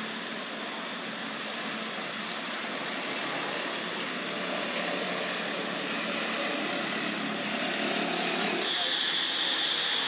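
Steady outdoor background noise, an even hiss and rumble that grows slowly louder. A steady high-pitched drone comes in near the end.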